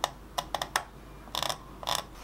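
Tip of a mechanical pencil dragged along the bottom of a circular-saw groove in a wooden board, clicking as it catches on the ridges left by the saw's slightly bevelled tooth tips. A run of sharp, irregular clicks, with a quicker cluster about one and a half seconds in.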